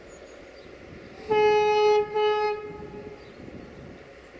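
Horn of an LDH1500 diesel-hydraulic shunting locomotive sounding two blasts on one steady note, the first longer and the second shorter, just after a gap.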